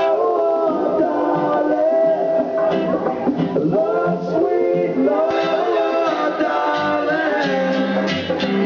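Live acoustic reggae band: a harmonica played into a microphone carries a wavering lead melody over strummed acoustic guitars and hand drums.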